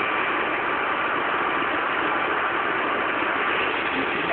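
Steady, even background noise with a faint high hum, with no distinct events.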